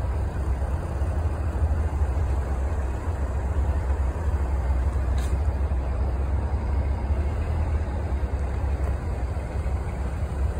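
Honda Prelude's four-cylinder engine idling steadily, a low rumble.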